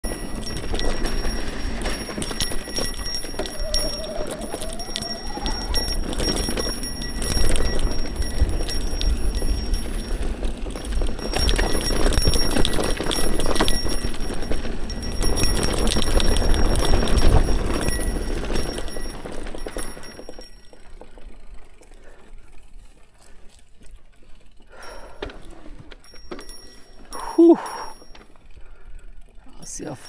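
Mountain bike rolling fast down a dirt singletrack, with tyre noise and wind rumbling on the bike-mounted microphone. About twenty seconds in the rumble drops to quieter rolling, and a short vocal sound comes near the end.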